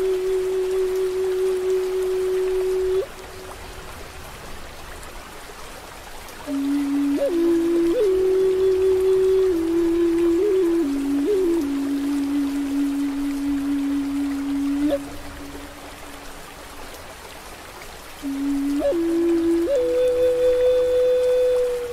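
Native American flute playing slow phrases of long held notes with quick upward flicks between them: one phrase ends about three seconds in, another runs from about six seconds to fifteen, and a third starts near the end. Underneath, a steady bed of rain and flowing stream water continues through the pauses.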